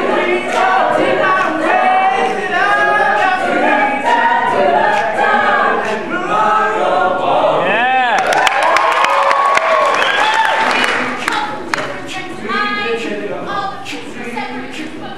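High school choir singing a cappella in close chords. Just before the midpoint a voice swoops down and back up, and from then on quick, sharp percussive hits join the singing.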